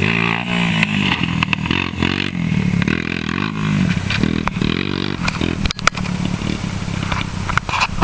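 Honda 250EX quad's single-cylinder four-stroke engine, fitted with a Wiseco piston, revving up and down repeatedly as the ATV is ridden hard, with a few sharp clicks in the second half.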